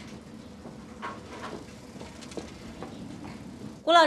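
Faint clicks and light rattles of a bicycle being wheeled along by hand, with a woman's voice calling out at the very end.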